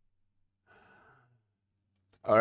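Near silence, with one faint exhaled breath from the man at the microphone about a second in.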